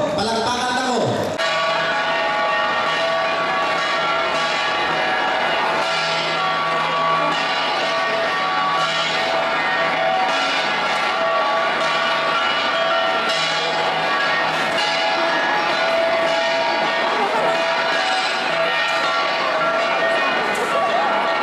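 An ensemble of flat bronze gongs (gangsa) beaten steadily, many metallic ringing tones sounding together under repeated strikes. A man speaks over a microphone for about the first second before the gongs take over.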